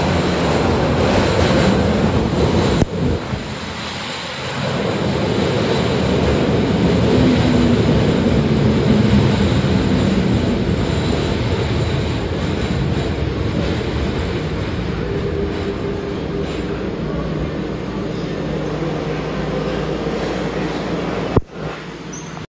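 Toei Oedo Line linear-motor subway train pulling into an underground platform and braking to a stop: a continuous rumble of wheels and running gear with a motor whine whose pitch shifts as it slows. A short sharp sound near the end.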